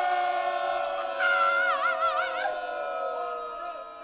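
A live Afrobeat band's voices and horns holding one long chord that slowly sags in pitch and fades away, with one higher line wavering in wide vibrato for about a second near the middle.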